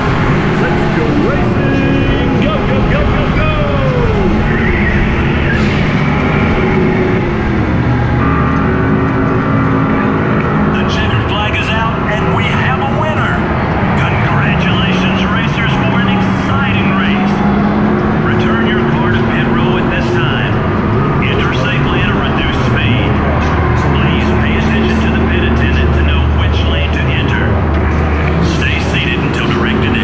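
Go-kart running flat out around a track, heard from the driver's seat: a steady motor hum whose pitch slowly rises and falls with speed, over constant loud rolling and wind noise.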